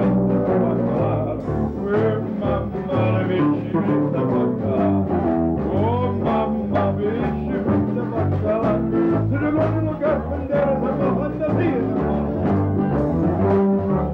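Live band playing a tune on electronic keyboard and electric bass, the bass notes keeping a steady beat.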